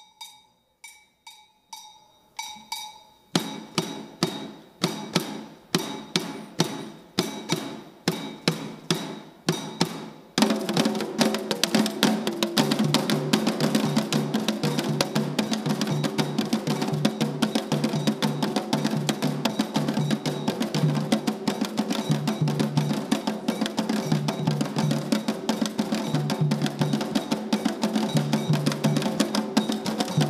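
Afro-Brazilian atabaque hand-drum ensemble. It opens with sparse ringing strokes at about two a second, louder strokes join about three seconds in, and about ten seconds in the whole group comes in with dense, steady drumming.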